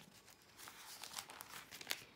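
Thin Bible pages being turned by hand: a quick run of soft papery rustles and crinkles, the sharpest just before the end.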